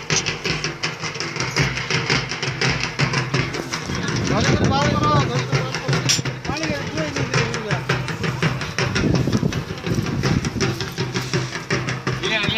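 Fast, steady drumming with a crowd's voices over it. A high, wavering call rises above the drums about four seconds in and again near the end.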